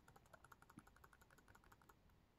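Faint, rapid, even clicking, about ten clicks a second, as a web page is scrolled down on a laptop.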